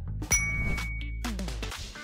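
A bright, bell-like ding sound effect about a third of a second in, ringing on one clear note for about a second, over background music with a steady beat. It marks the end of a quiz question's countdown.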